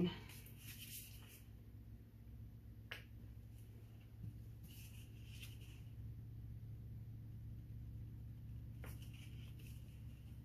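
Faint clicks and short soft scrapes of a small palette knife swiping wet acrylic paint across a canvas, over a steady low hum.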